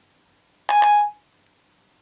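Siri's tone from an iPhone 5 speaker, a short two-note electronic beep lasting about half a second, partway in. It signals that Siri has stopped listening to the spoken question and is working on the answer.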